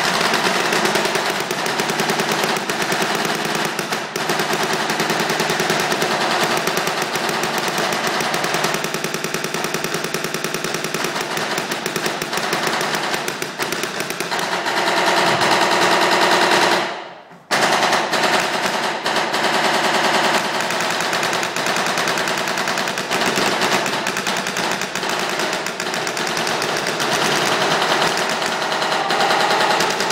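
Paintball markers firing in rapid, continuous strings, echoing in a gym hall, with a brief pause about two-thirds of the way through. The markers are shot without paintballs and with barrel socks on.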